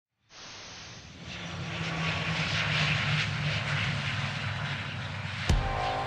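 Aircraft engine drone with a hiss over it, swelling up over the first couple of seconds and then holding steady. A sharp hit comes shortly before the end.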